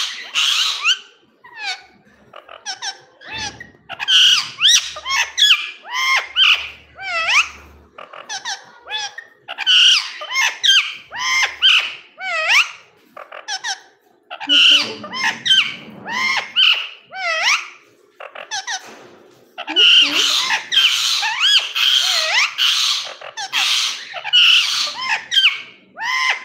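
Indian ringneck parakeet chattering loudly in bursts of rapid high chirps and squeaky whistles that rise and fall in pitch. A low rustle comes about fifteen seconds in.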